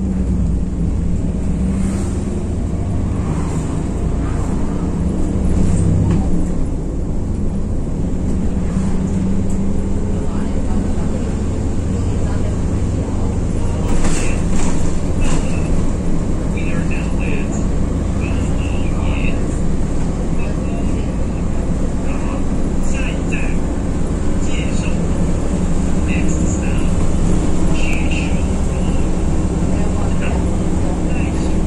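City bus running along the road, heard from inside the cabin: a loud, steady low drone of engine and road noise, with a few low engine tones that shift slightly as it drives.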